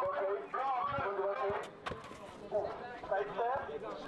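Several people talking and calling out at once, players and onlookers at a street basketball game, with a couple of sharp knocks about halfway through.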